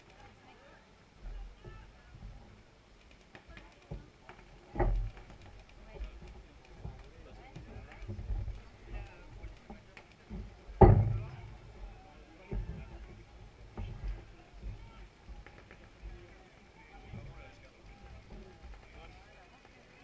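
Indistinct chatter from a crowd of spectators and players, with low rumbles throughout. A dull thump comes about five seconds in, and a louder one about eleven seconds in.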